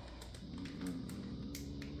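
Faint light taps and rustles of a candy bar's plastic wrapper being handled and turned over in the hands.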